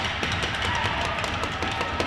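Hockey arena ambience: a steady wash of crowd noise with faint music over the arena sound system and scattered light taps.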